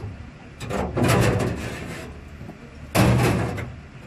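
Sheet-steel panel of a claw machine being pried up with a pry bar: two loud grating scrapes of metal being forced, the second starting suddenly about three seconds in.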